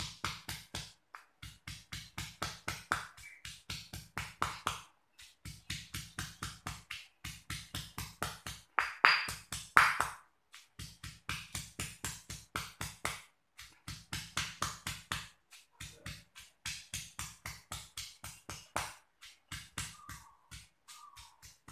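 Stone pestle pounding chilies, shallots, garlic and tomato in a stone mortar: quick, even thuds, about four a second, in runs broken by short pauses.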